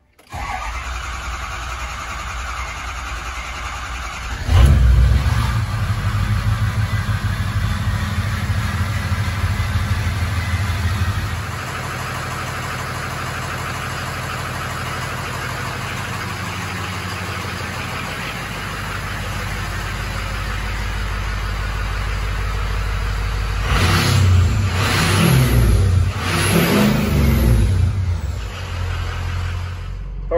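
Ford 6.0 L Powerstroke V8 turbodiesel cranking on the starter for about four seconds while it builds injection control pressure, with air still in the high-pressure oil system, then firing and running. It settles into a steady idle and is revved several times near the end.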